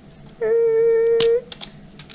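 Protective plastic film being peeled off an electric dirt bike's handlebar display, giving one steady squeal of about a second with a sharp click near its end.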